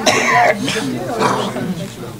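A man coughing and clearing his throat. The cough is loudest in the first half second, followed by lower talk in the room.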